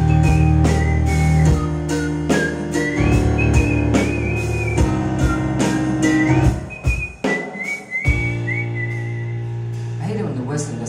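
A man whistling a sliding melody into the microphone over live band accompaniment with a steady beat. The music settles onto a held chord about eight seconds in.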